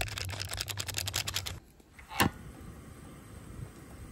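Rapid crinkling and clicking of cup-ramen packaging being opened and handled. Then, about two seconds in, a single sharp click, followed by the soft steady hiss of a portable gas stove burner.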